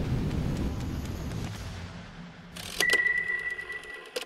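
Faint room noise fading out after a voice stops. About two and a half seconds in, an end-card logo sting starts: a quick run of clicks over one steady high tone.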